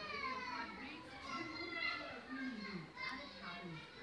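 Voices talking in the room, a child's voice among them, unclear words and no painting sounds to be heard over them.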